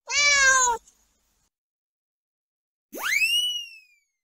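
Two meows: the first, under a second long, falls slightly in pitch; the second, near the end, sweeps sharply up and then slides back down. Between them there is dead silence.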